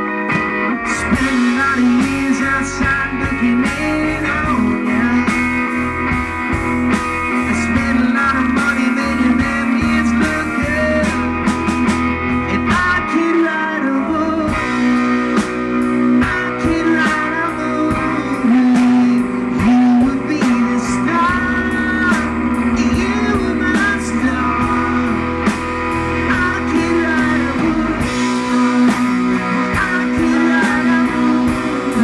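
Live band playing amplified music: guitar over bass guitar and a drum kit.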